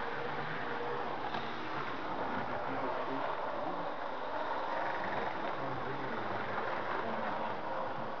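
Indistinct background chatter of people, over a steady running noise from HO-scale model trains rolling along the track.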